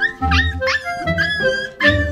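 Background music with a woodwind tune, over which husky puppies give several short, high, bending yelps and whines as they play-fight. A few low thuds come in between.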